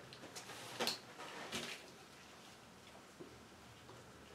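Two brief, faint rustling handling noises about one and one and a half seconds in, over faint room tone.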